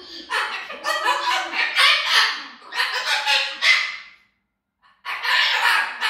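A white cockatoo making a rapid run of loud, harsh calls, with a short break about four seconds in; the bird is angry.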